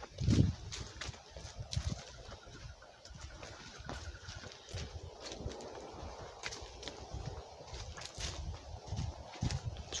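Footsteps walking along a dry, leaf-covered forest trail: irregular soft thuds with leaf rustle, the heaviest one just after the start.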